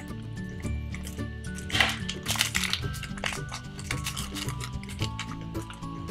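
Background music, with a foil trading-card packet being cut open with scissors and crinkling as the cards are pulled out. The crinkling is loudest around two to three seconds in.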